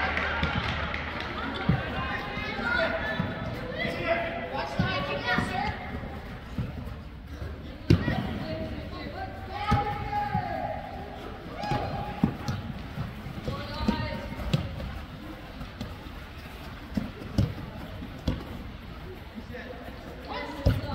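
Soccer ball being kicked on artificial turf in a large echoing indoor hall: a series of sharp thuds, the loudest about eight seconds in, over indistinct shouts and voices of players and spectators.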